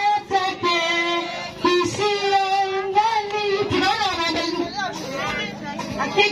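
A woman singing into a microphone, a high voice holding long, steady notes between short phrases.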